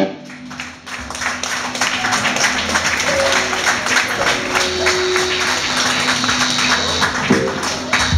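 A loud hardcore punk song stops abruptly; about a second later the audience starts applauding and keeps it up, with a low steady hum from the stage amplifiers underneath.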